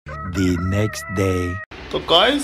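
A rooster-crow sound effect laid into the edit, a drawn-out call in two parts, over a steady held tone. It starts and cuts off abruptly, lasting about a second and a half.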